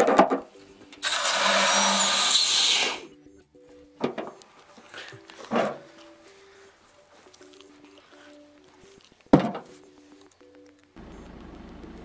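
Loud, even hiss of air rushing in through the opened bung fitting of a vacuum-collapsed steel oil drum, lasting about two seconds, over soft background music. A few short knocks or clicks follow.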